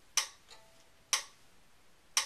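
Two sharp ticks about a second apart, keeping a slow, steady beat as a count-in for a slow fiddle tune.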